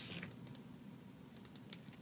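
Quiet indoor room tone: a low steady hum with a couple of faint clicks near the end.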